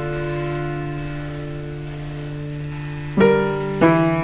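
Instrumental piano music: a held chord with a steady bass note rings on and slowly fades, then fresh chords are struck a little after three seconds in and again just before the end.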